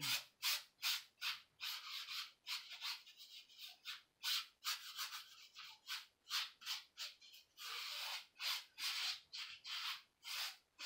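A paintbrush brushing acrylic paint across a stretched canvas in quick back-and-forth strokes. It makes a scratchy rubbing, about two to three strokes a second, with a few longer strokes between them.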